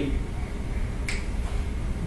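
A single short click about a second in, over a steady low hum.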